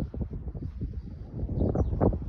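Wind buffeting a phone's microphone outdoors: an irregular low rumble that comes and goes.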